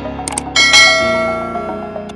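Subscribe-button sound effect: a couple of sharp mouse clicks, then a notification bell rings a little after half a second in and slowly dies away, over background music.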